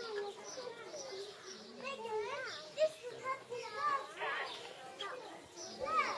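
Indistinct chatter of several people with children's voices among it, no words clear, and one brief sharp click a little before halfway through.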